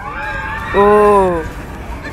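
A man's long drawn-out exclamation "oh", falling in pitch at its end, as a roller coaster train comes round. Behind it are a higher sustained cry and a low rumble.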